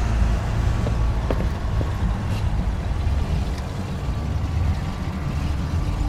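Car engine idling while the car is stopped, a steady low rumble.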